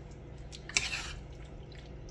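Spoon stirring a thick, wet mix of chicken, cream cheese and cream of chicken soup in a slow-cooker crock, with one short wet squelch about a second in.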